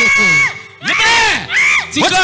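A teenage girl's high-pitched screaming: one long held cry that breaks off about half a second in, then two shorter rising-and-falling wails.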